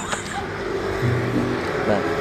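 Acoustic guitar played softly, chords ringing on with a held low bass note about a second in, and a brief bit of voice near the end.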